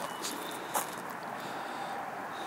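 Outdoor background ambience: a steady even hiss with two brief soft crackles in the first second, and a faint thin high tone that comes and goes.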